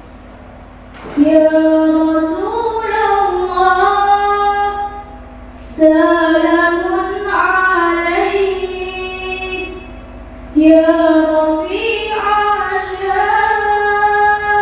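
A young girl singing a sholawat, a devotional song of praise to the Prophet, solo into a microphone. She sings three long, drawn-out phrases with gliding, held notes, pausing briefly for breath between them.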